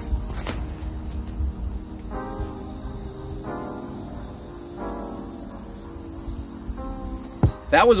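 Insects shrilling steadily in a summer field, a continuous high-pitched drone in two bands, over a low wind rumble on the microphone. A few faint, short pitched sounds come and go in between.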